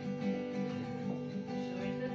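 Acoustic guitar being strummed, chords ringing in a steady, even rhythm.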